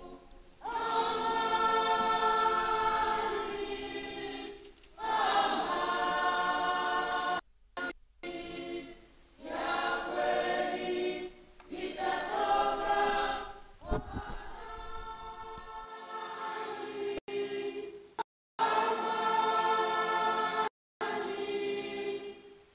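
A choir singing in long held phrases with short pauses between them. The sound cuts out briefly several times.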